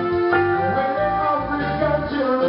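A live band playing a reggae song, with electric guitars over bass and drums and long held notes.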